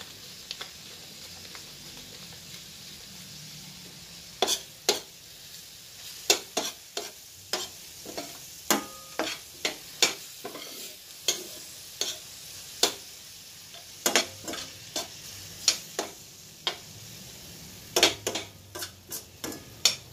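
Minced beef sizzling steadily in a stainless steel pan. From about four seconds in, a metal spoon stirring it clacks and scrapes against the pan in quick, irregular knocks.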